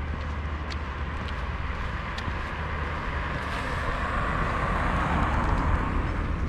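Road traffic: a steady low rumble, with a passing car's tyre noise swelling over the last couple of seconds, and a few light ticks.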